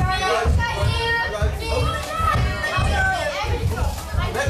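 Children's voices shouting and calling out over music with a steady low beat.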